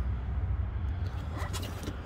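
A low steady rumble under outdoor background noise, with no distinct knocks or calls.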